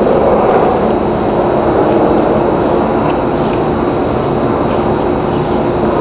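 Loud, steady mechanical drone with an even rumble and a faint constant hum, unchanging throughout.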